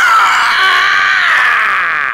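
A person's long, high-pitched scream, held unbroken and sagging slightly in pitch: a voice-acted cry of fright.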